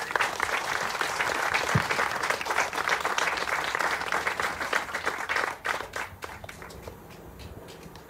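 A small seated audience applauding, dying away about six seconds in.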